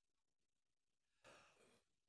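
Near silence, broken about a second and a quarter in by one faint, short breath drawn in before speaking.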